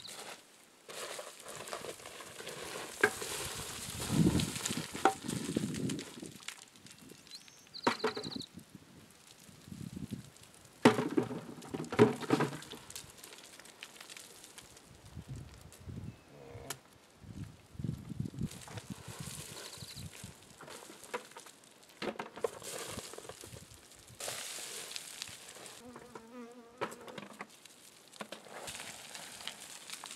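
Boots crunching and sliding on loose rock and gravel, with rocks clacking as they are picked up and dropped into a plastic bucket. The sound comes in irregular bursts with occasional sharp knocks.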